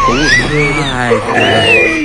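A high, wavering cry that slides up and down in pitch, with other voices and a steady low hum beneath it.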